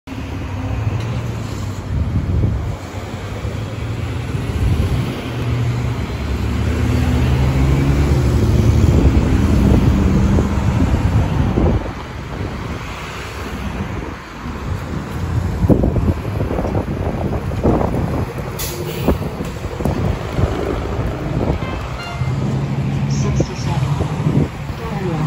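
Road traffic passing with a loud, steady engine drone. A New Flyer XD40 Xcelsior diesel transit bus pulls up, with a short hiss of released air from its brakes about three quarters of the way in.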